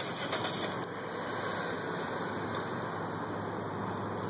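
Steady outdoor background hum, like distant traffic or an idling engine, with a few faint light clicks in the first second.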